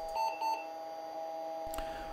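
Conner CP341i 40 MB IDE hard drive failing to start up, giving a steady electronic tone with no seek sounds, a sign that the drive is faulty. About a quarter and half a second in come two short beeps.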